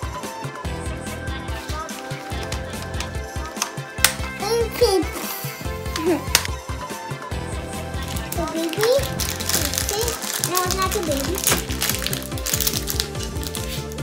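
Background music with a moving bass line, a child's voice now and then, and scattered clicks and crinkles of a plastic wrapper being peeled off a toy ball.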